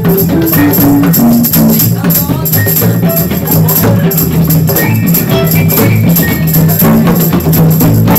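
Balkan-style improvised music: a violin playing a quick melodic run that steps down and then climbs, over hand drums keeping a steady driving beat.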